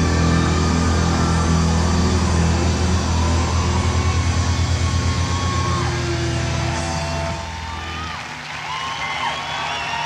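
A live rock band's closing chord rings out as a loud, sustained low bass drone that pulses for a few seconds, then falls away about eight seconds in. Under and after it, an outdoor festival crowd cheers and whoops.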